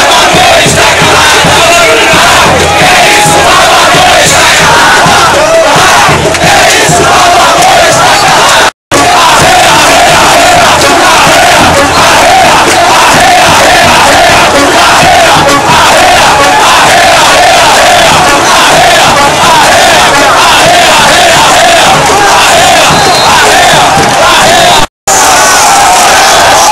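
Loud stadium crowd of football supporters chanting and shouting together in a steady rhythm. The sound cuts out briefly twice, about a third of the way in and near the end.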